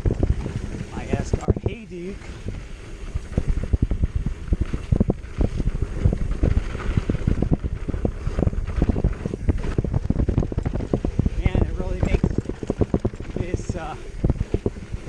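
Esker Hayduke hardtail mountain bike descending a bumpy dirt trail: a continuous dense clatter of knocks and rattles as the tyres and frame hit braking bumps, with wind noise on the handlebar microphone.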